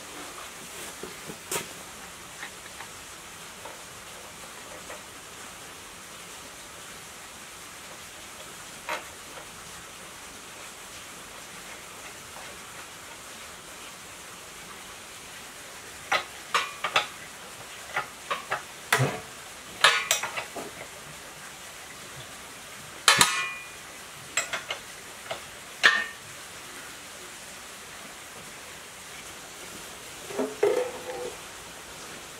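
Metal engine parts clinking and knocking as they are handled and fitted to an engine block during assembly: a few faint ticks at first, then a run of sharp metal clinks and knocks through the second half.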